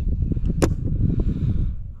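A single sharp click a little over half a second in, with a few fainter ticks, over a steady low rumble.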